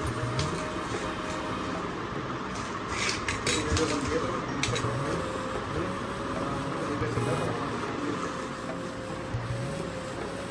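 Plastic bubble wrap crinkling and crackling as a small cardboard box is wrapped in it by hand, with a cluster of sharp crackles about three to five seconds in.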